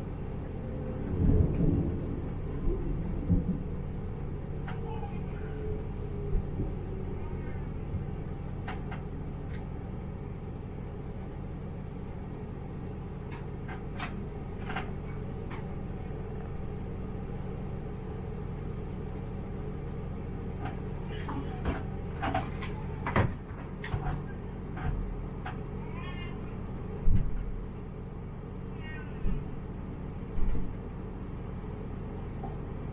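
Diesel railcar's engine running with a steady low rumble, heard from the driver's cab as the train draws into a station and stands at the platform. A few heavy thumps come about one to three seconds in, and scattered sharp clicks and short high squeaks follow in the second half.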